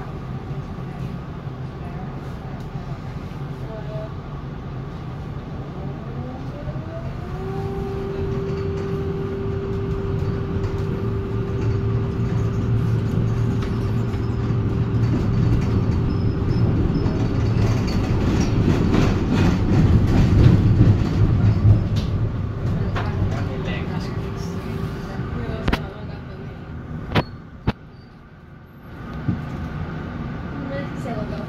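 Inside a 1987 Valmet-Strömberg MLNRV2 tram under way. A whine rises in pitch about seven seconds in and then holds one steady tone for several seconds, typical of its thyristor power control. The rumble of the running gear on the rails builds to its loudest about two-thirds through, then dies down near the end, with a few sharp clicks.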